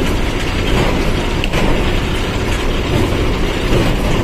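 Truck driving along a highway, heard from inside the cab: a steady, loud mix of engine and road noise.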